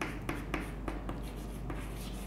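Chalk writing on a chalkboard: a quick run of short taps and scratches as each letter is formed, over a steady low hum.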